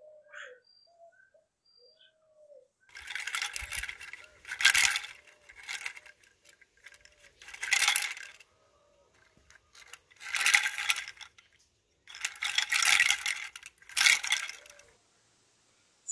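A coconut-shell wind chime clattering, its hollow shells knocking together in about six bursts of clacks with short pauses between.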